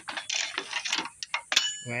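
Scraping and rustling of a plastic headlight housing and trim being moved by hand, then a few sharp clicks, the loudest a metallic clink with a brief ringing about one and a half seconds in.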